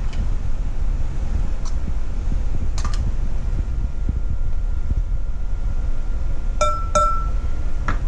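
A metal measuring spoon clinks against a glass mixing bowl: a couple of faint taps early on, then two sharp clinks near the end, after which the glass rings on briefly. A steady low hum runs underneath.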